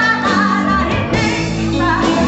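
A woman singing a pop-rock song into a microphone over a live band, her held notes bending in pitch above steady bass notes.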